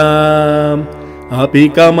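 A voice singing a Sanskrit verse in Carnatic style in raga Shanmukhapriya. It holds one long steady note, drops away briefly about a second in, then starts the next melodic phrase.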